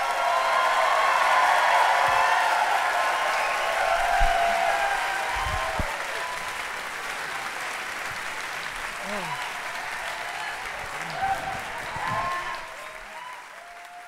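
Audience applauding and cheering, loudest in the first few seconds and then slowly dying away.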